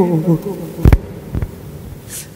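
A man's chanting voice over a microphone ends a phrase in the first half-second, then a pause with a sharp knock about a second in and a softer one shortly after.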